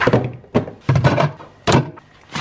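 Groceries being put into a fridge: a quick series of about five thunks and knocks as packs and containers are set down on the plastic and glass shelves and door rack.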